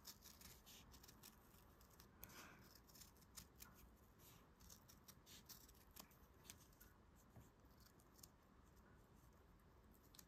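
Faint, irregular snips of small metal scissors cutting around a sticker through stiff heavy-duty felt, a few cuts a second.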